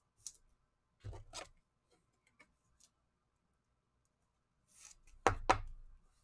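A trading card sliding into a clear rigid plastic toploader, with faint scrapes of card and plastic, then two sharp clicks close together near the end.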